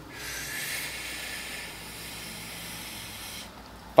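A man's slow, steady inhale, an airy hiss lasting about three and a half seconds: the five-second in-breath of a 5-5-5 calming breathing exercise (in, hold, out).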